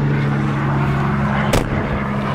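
Aluminum horse-trailer drop-down feed door swung shut, closing with a single sharp bang about one and a half seconds in, over a steady low hum.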